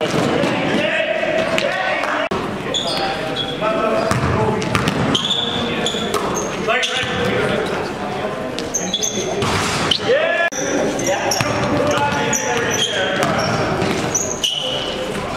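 Live sound of an indoor basketball game on a wooden court: a basketball bouncing, short high-pitched squeaks of sneakers on the hardwood, and players calling out, all in a reverberant gym.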